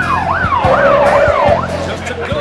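Police siren wailing, its pitch sweeping fast up and down about twice a second, stopping shortly before the end, over an engine running steadily underneath.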